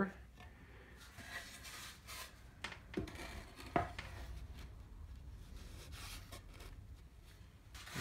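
Wooden sand-casting flask halves being fitted together: faint rubbing and scraping of wood and packed sand, with a few light knocks, the loudest about four seconds in.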